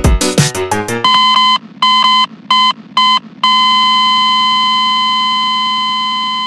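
An electronic music beat stops about a second in. Electronic beeps follow: four short beeps of uneven length, then one long, held beep that slowly fades.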